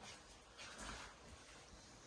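Near silence: faint room tone, with one soft, brief rustle just under a second in.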